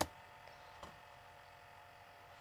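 Quiet room tone with a steady electrical hum. There is a sharp click at the very start and a fainter tick just under a second in.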